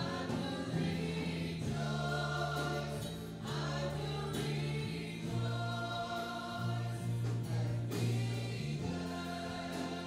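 Live worship music from a small church band: a singer leading over guitars, with sustained bass notes that change every second or two.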